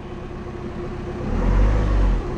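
VW 2.0 TDI common-rail four-cylinder diesel idling quietly just after its first start following the swap into the van. Its low rumble deepens and grows a little louder about one and a half seconds in.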